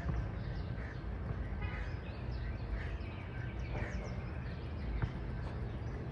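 Outdoor ambience: a steady low rumble with scattered short bird calls, and a single tap about five seconds in.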